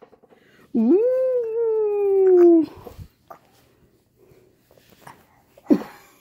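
Alaskan Malamute howling once for about two seconds, a quick rise in pitch followed by a long, slow slide down. A short, sharp sound follows near the end.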